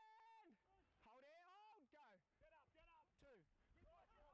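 Near silence: the soundtrack has dropped almost out, leaving only very faint shouted voices.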